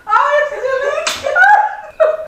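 Loud laughing, with one sharp snap of a stretched rubber exercise band about a second in.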